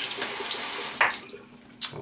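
Bathroom sink tap running in a steady rush, shut off about a second in with a small knock. A short, sharp high click follows near the end.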